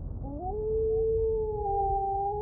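A wolf howl: one long call that glides up in pitch about a quarter second in, then holds steady, over a low rumble.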